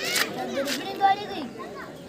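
Several young voices shouting and calling over each other during a kabaddi raid, with a short loud shout about a second in.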